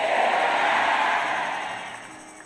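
A large congregation shouting a loud "amen" together. The many voices blend into one roar that is loudest at the start and fades away over about two seconds.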